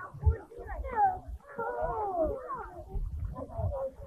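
Distant voices of people at a swimming beach, with shouts and calls rising and falling in pitch, over irregular low rumbling of wind on the microphone.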